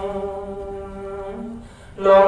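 Buddhist chanting: a voice holding a long, steady sung note with a lower note held beneath it, fading away over the last half second.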